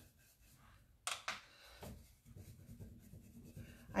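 Paintbrush bristles scrubbing and dabbing chalk paint on a painted wooden drawer front: a few quick, sharper strokes about a second in, then faint steady rubbing.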